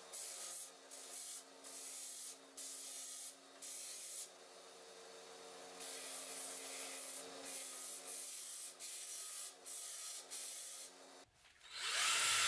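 Scheppach bench disc sander running with a steady motor hum while a metal ferrule on a wooden tool handle is pressed to the sanding disc in short repeated contacts, each one a burst of gritty hiss, roughly one a second. The sound cuts off about a second before the end.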